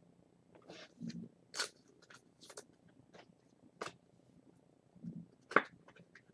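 Trading cards and pack wrappers being handled, giving a scattered series of short rustles and clicks, the sharpest one about five and a half seconds in.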